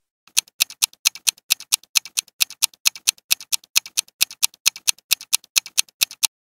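Countdown-timer sound effect: a quick, steady clock ticking, about four or five ticks a second, marking the time left to answer.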